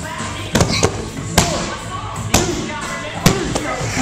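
About five sharp thuds and slaps of wrestlers' bodies hitting padded crash mats, spread unevenly across a few seconds, over background music.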